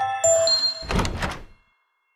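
Short musical logo sting: bright ringing chime-like notes, then a deep hit about a second in that fades out shortly after.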